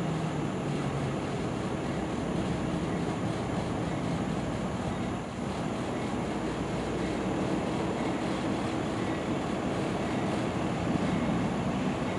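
Steady low drone of diesel locomotives running out of sight, with no sharp knocks or coupling impacts.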